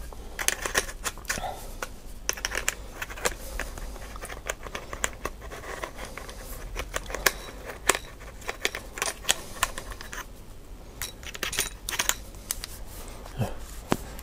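Clicks, taps and light scraping of hard plastic and metal parts handled and fitted together: a DJI Osmo gimbal handle and its Z-axis adapter being put back together, in irregular short knocks.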